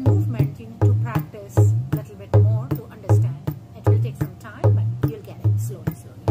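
Tabla playing a Dadra taal (six-beat) variation. Deep bass-drum strokes about every three-quarters of a second slide upward in pitch as the fingers press and glide on the drumhead (ghaseet), with crisp treble-drum strokes in between.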